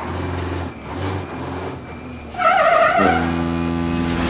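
Truck sound effects: a low engine rumble, then a short higher wavering blast about two and a half seconds in, followed by a steady deep drone of several tones.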